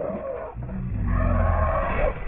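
Lions growling low and deep while they grapple with their prey, rising to the loudest point about a second in.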